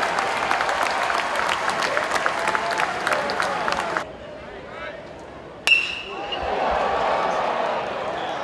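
Ballpark crowd chatter with scattered claps, cut off abruptly about halfway. After a quieter moment, a metal baseball bat strikes the ball with a single sharp, ringing ping, and the crowd rises into cheering.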